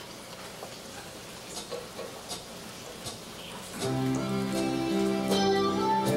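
A hushed room with a few faint clicks. About four seconds in, a Christmas carol begins on acoustic guitar with steady, held notes forming a chord.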